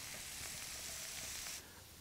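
Butter and olive oil sizzling in a hot non-stick frying pan as sliced garlic goes in, a steady faint sizzle that drops away sharply near the end.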